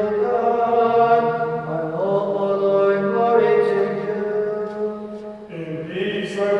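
A man chanting a Byzantine-style Orthodox hymn or litany unaccompanied, in long held notes that shift slowly in pitch, with the church's reverberation behind it.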